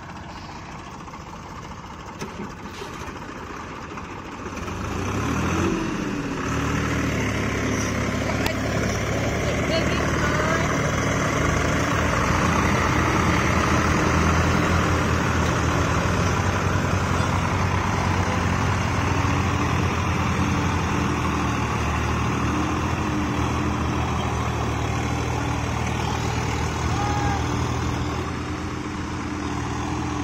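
Tractor diesel engines working under heavy load while towing a tractor bogged in mud. The engine sound rises about five seconds in, with a brief climb in pitch, then holds loud and steady.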